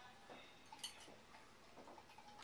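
Near silence: room tone, with one faint click a little under a second in.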